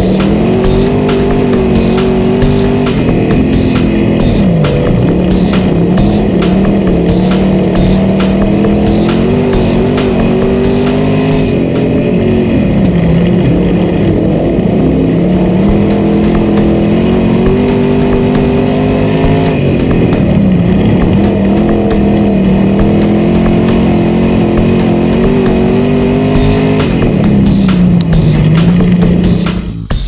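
IMCA Sport Modified V8 engine heard from inside the car at racing speed around a dirt oval. Its revs climb, then drop sharply as the driver lifts and gets back on the throttle about every eight seconds, lap after lap.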